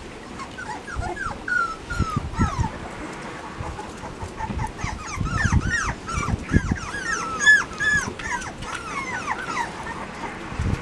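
Chocolate Labrador puppies whimpering and squeaking: many short, high calls that bend in pitch, a few at first and then crowding and overlapping from about halfway, over low thumps.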